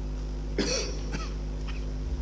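A person coughing: a sharp cough about half a second in, then a smaller one, over a steady electrical hum.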